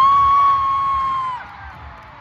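A nearby concertgoer's high-pitched scream, swooping up into one held note for about a second and a half and then dropping away. It is the loudest thing, over the stadium concert's amplified music and its low beat.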